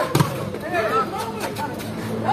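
A single sharp smack of a volleyball being hit, about a quarter second in, over ongoing voices.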